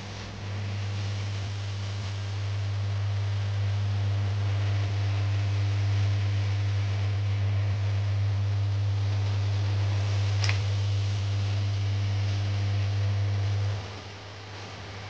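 Steady low electrical hum, loud and unchanging, which cuts off just before the end. A single faint click comes about ten seconds in.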